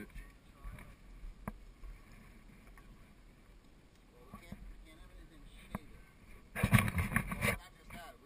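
A few faint clicks and distant voices, then about six and a half seconds in a loud burst of scraping and rattling lasting about a second: a solar panel being shifted against rocky ground.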